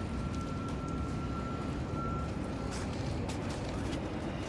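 City street traffic: a steady low rumble with a thin, steady high-pitched whine that cuts off about three seconds in.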